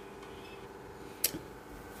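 Quiet room tone with a faint steady hum, broken by a single sharp click a little past halfway.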